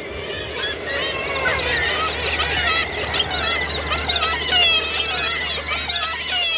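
A flock of birds calling at once, many overlapping calls rising and falling in pitch, over a low steady rumble.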